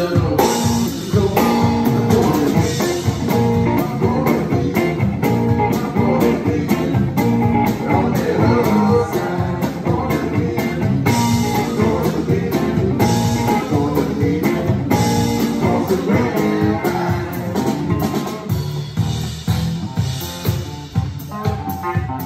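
Live blues-rock band playing loud: electric guitar, bass and drum kit in a steady groove, with no sung words.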